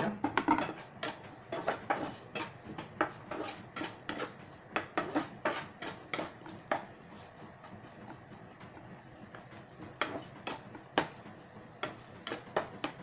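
Slotted spatula scraping and knocking against a nonstick frying pan while stirring diced onions and garlic: an irregular run of clicks and scrapes that eases off for a few seconds in the second half, then picks up again.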